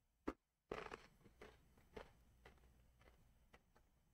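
A person biting into a crunchy snack and chewing it: a sharp crack, then crunches roughly every half second that grow fainter.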